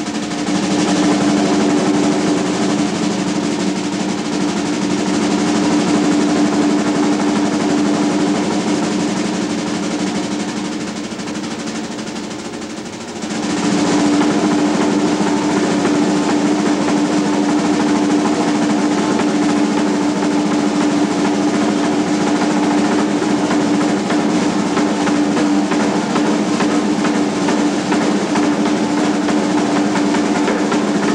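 Jazz drum solo on a full drum kit: a dense, unbroken roll across the drums and cymbals. It eases off somewhat, then comes back louder about thirteen seconds in.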